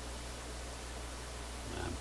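Steady low hum with an even hiss: background room tone, with no distinct sound event.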